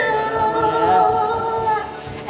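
A girl singing a Thai pop song into a microphone over a backing track played through loudspeakers, holding one long note for most of the two seconds.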